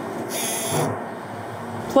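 Steady room noise with a brief hiss about half a second in.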